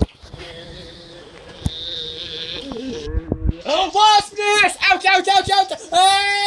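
A high-pitched voice wailing in quick, broken, wavering cries over the last two seconds or so, after a softer steady tone.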